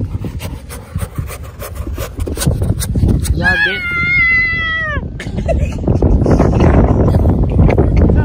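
A hand scraping and digging in loose beach sand, a run of short gritty scrapes. A little after three seconds, a single long high-pitched cry sounds for about a second and a half and drops in pitch at its end, followed by wind rumbling on the microphone.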